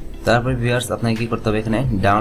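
A man's voice talking, with no other sound standing out.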